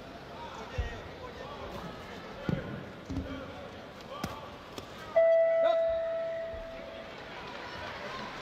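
A few thuds of gloved punches landing, then about five seconds in the ring bell rings once, a single ringing tone that fades away over about two seconds, marking the end of the round.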